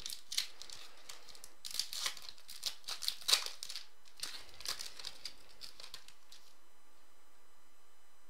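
Foil wrapper of a trading-card pack being torn open and crinkled by hand: irregular sharp crackles and rustles for about six seconds, then they stop.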